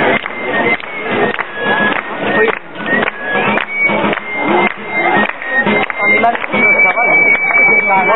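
Folk dance music: a high thin piped melody over a steady beat, ending on a long held note, with crowd talk underneath.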